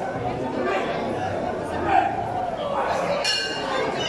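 Spectators chatting around a boxing ring, with a sustained metallic ringing tone, rich in overtones, starting abruptly near the end.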